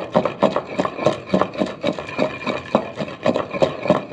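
Wooden pestle pounding a wet chutney paste in a clay mortar (kunda), a steady run of dull knocks at about three strokes a second.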